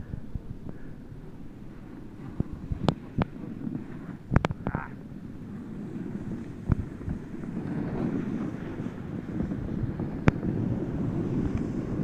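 Wind buffeting a phone microphone, a steady low rumble that swells a little toward the end, with a few sharp clicks of handling.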